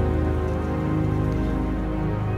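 Slow film score of held, sustained tones, with a steady patter like rain blended under it.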